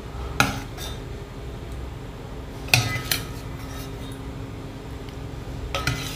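A plastic serving ladle knocking against a stainless steel pot of sugar syrup as gulab jamun are scooped out: sharp clinks in three brief pairs, about two and a half seconds apart.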